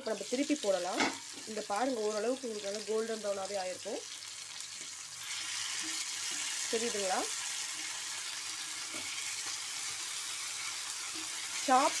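Mutton chops frying in hot oil in an iron pan, with a steel spatula turning the pieces. The sizzle grows much louder about five seconds in, then holds steady.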